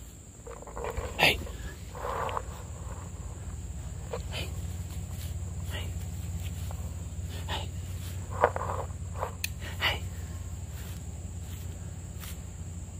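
Long-haired German Shepherd puppy in the grass, with a couple of short, soft sounds about one and two seconds in, then scattered brief rustles and ticks as she noses and mouths at the grass. A steady low hum runs underneath.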